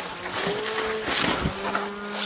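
ATV engine running with a steady buzzing note that rises a little about half a second in, over irregular crunching and rustling noise.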